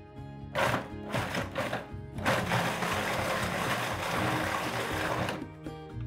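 Food processor running, whizzing a runny mix of eggs, oats, breadcrumbs, butter and maple syrup: a few short bursts in the first couple of seconds, then a steady run of about three seconds that cuts off shortly before the end.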